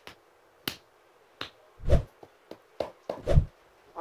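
A person fidgeting on a couch: about seven short sharp clicks and dull thumps at irregular intervals, with near silence between.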